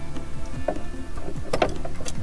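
Background music, with a couple of short clicks about a third of the way in and again near the end.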